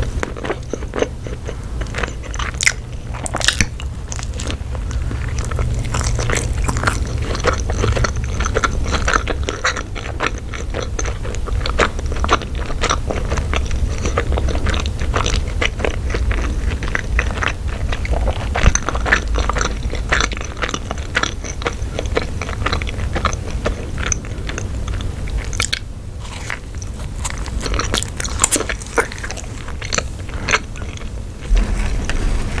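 Close-miked chewing and biting of a hot dog in a bun topped with mac and cheese, with many small, irregular mouth clicks.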